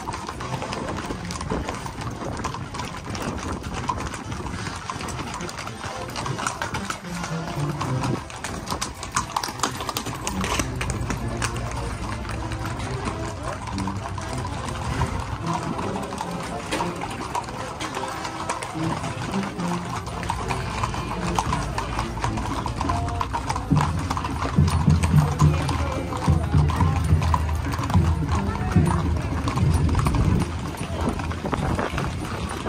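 Many horses' shod hooves clip-clopping at a walk on a paved street, amid people's voices and music.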